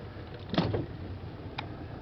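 Boat motor running slowly as a low steady hum. A short, sharp louder sound comes about half a second in, and a faint click about a second later.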